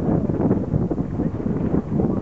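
Wind buffeting the microphone on a boat on open water: an irregular, gusting low rumble.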